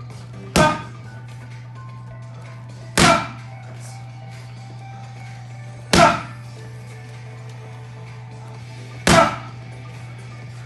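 Boxing gloves striking a heavy punching shield four times, about three seconds apart. Each blow is a sharp smack with a short echo.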